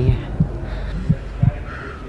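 Heartbeat sound effect: a slow run of low, dull thumps about every half second, used to convey nervousness.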